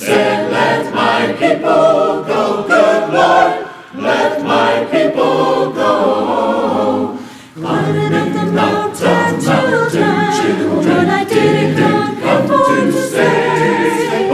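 Mixed-voice church choir singing a gospel spiritual in harmony, with brief breaks between phrases about four and seven and a half seconds in.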